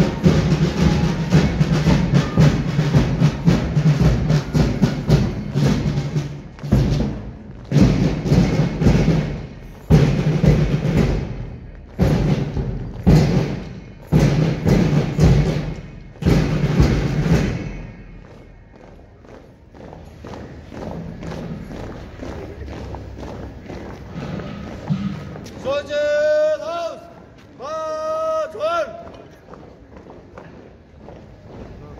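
School marching band drums playing a march beat with heavy bass-drum strokes, which stops about two-thirds of the way through. Near the end come two short shouted calls, like marching commands.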